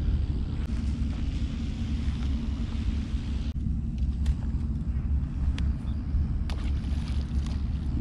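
Wind buffeting the microphone: a steady, gusting low rumble, with a few faint clicks.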